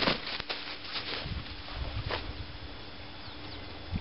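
Two roosters fighting on grass: wings flapping and bodies scuffling, with a few sharp hits in the first half second and another about two seconds in. Neither bird calls.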